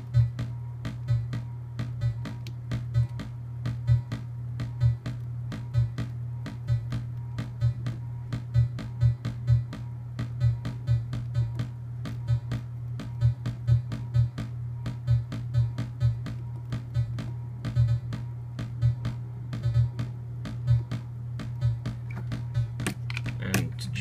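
Eurorack modular synthesizer playing a gate-sequenced pattern: short percussive clicks, several a second in an uneven repeating rhythm, over a steady low tone. The rhythm is a step pattern of gates from a Zorlon Cannon MKII running rewritten firmware.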